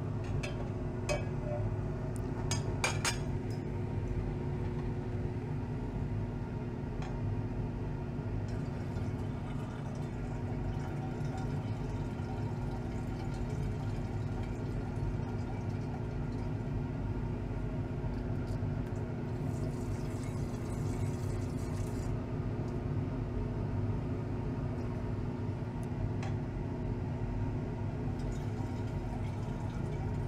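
Glassware clinking a few times as a lid and a hot glass beaker are handled, then hydrochloric acid being poured off gold powder from the tilted beaker into a glass flask, with a short hiss of pouring liquid. A steady low hum runs underneath.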